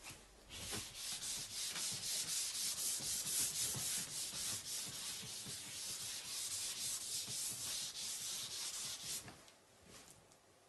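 A chalkboard eraser rubbing chalk off a blackboard in quick, continuous back-and-forth strokes. The scrubbing starts about half a second in and stops abruptly a little after nine seconds.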